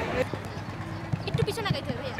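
Voices, with a short run of quick knocks or taps a little past a second in.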